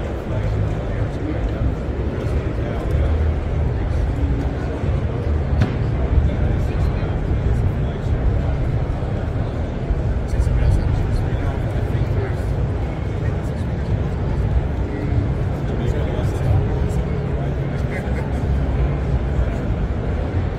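Busy trade-show hall ambience: many people talking at once over a steady low rumble.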